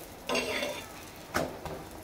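Metal spatula scraping and pressing against a tawa as a paratha fries, with a sharp clink of metal on metal about one and a half seconds in.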